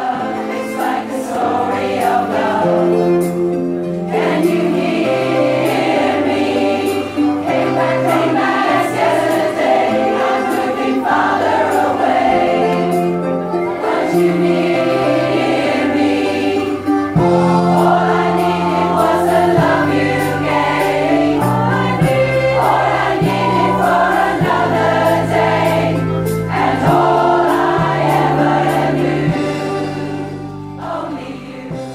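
Large community choir, mostly women's voices, singing a song in parts, with held low notes stepping in pitch underneath.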